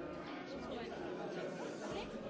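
Indistinct chatter of many people talking at once in a busy room.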